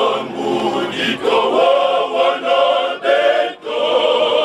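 Male choir singing together in sustained phrases, with a brief break for breath near the end.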